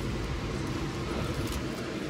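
Steady low background hum, with faint rustling of fabric and hangers as hanging linens are pushed along a rack.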